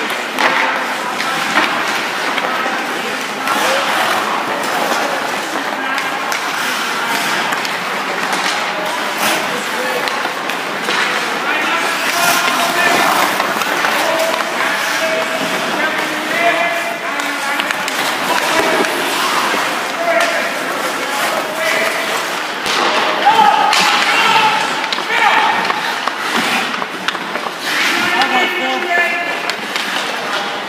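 Ice hockey skate blades carving and scraping on the ice, with repeated knocks of stick on puck, over indistinct voices.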